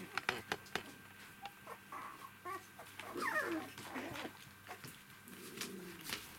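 Young poodle puppies giving short high squeaks and a gliding whine while they play, with a quick run of light clicks and taps in the first second.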